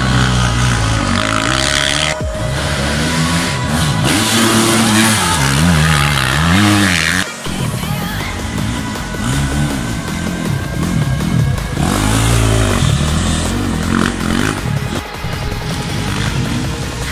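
Enduro dirt bike engines revving up and down again and again as they are ridden through the course, with music playing along; the engine sound breaks off briefly about seven seconds in.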